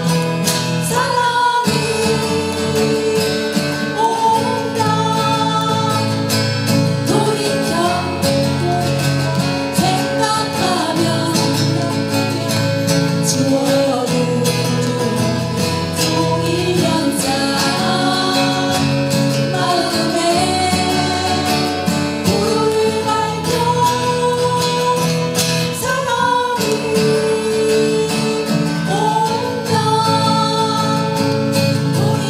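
Live performance of three acoustic guitars played together, with women's voices singing the melody over them.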